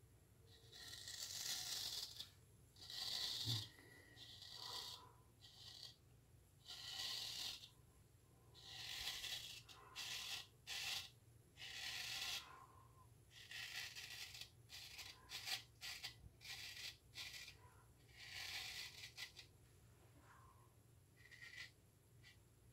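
Straight razor scraping stubble through shaving lather on a second pass: a series of short, faint, scratchy strokes, about one every second or two, with pauses between.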